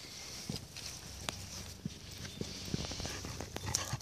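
A few faint, irregular soft thumps of footsteps on grass, over a quiet outdoor background.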